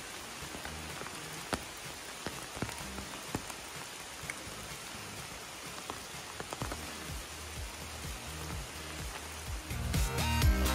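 Steady heavy rain falling on a river and on leaves, an even hiss with scattered sharper drops.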